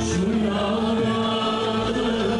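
Male soloist singing a Turkish art music song in makam Hüzzam, holding and bending long sung notes, with the instrumental ensemble accompanying.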